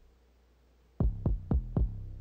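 Kick drum and 808 bass of a hip-hop beat played back on their own: about a second of quiet, then four quick kick hits about a quarter second apart, each leaving a sustained low 808 tail.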